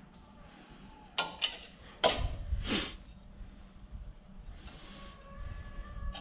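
A few sharp knocks and clanks from a raccoon carcass and its clamps on a metal skinning rig as the carcass is turned around, the loudest about two seconds in, followed by low scraping and handling.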